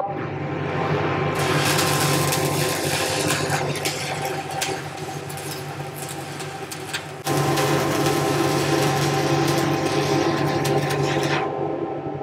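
Shielded metal arc (stick) welding with a 1/8-inch Eagle 606 hardfacing electrode at about 120 amps: the arc crackles and sizzles steadily over a low hum. It starts about a second in, steps up in loudness about seven seconds in, and stops shortly before the end.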